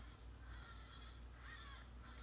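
Hobby servo in an animatronic Teddy Ruxpin's base whirring faintly as it tilts the bear's body back and forth, with a steady low hum underneath.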